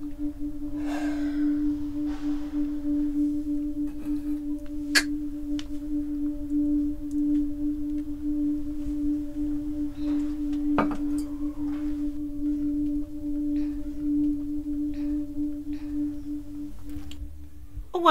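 A single low held drone note with a faint higher overtone. It comes in suddenly and stays steady with a slight slow pulsing, with a couple of sharp clicks about five and eleven seconds in. It is a sustained note from a film's background score.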